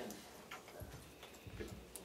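Quiet room with a few faint ticks and a couple of soft, low knocks.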